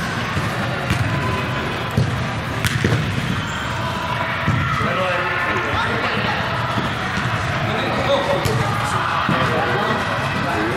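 Thuds of a soccer ball being kicked every few seconds in a large indoor hall, over a steady background of indistinct players' and spectators' voices.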